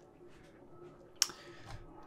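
Quiet room tone in a small room, broken once by a single short, sharp click about a second in.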